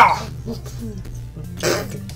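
A man's strained vocal noises as he pulls hard at a tough gummy candy with his teeth: a loud sudden burst right at the start and a shorter breathy one near the end, over background music.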